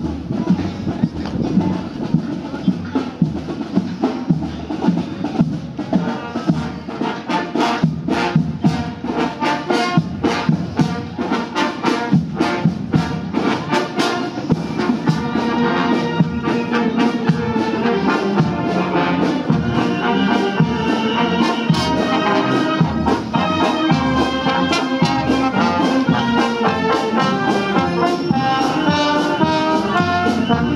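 Brass marching band playing a march, with trumpets and trombones over regular drum beats. It grows louder about halfway through as the brass section draws near.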